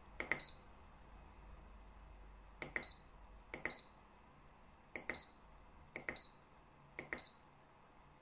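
DL24P electronic load's push button pressed six times, each press giving a click and then a short high beep, as the set discharge current is stepped up one amp per press.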